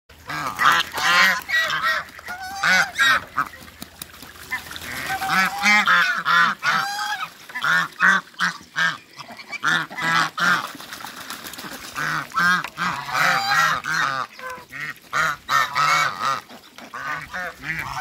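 A flock of domestic African geese honking over and over, many calls overlapping almost without pause.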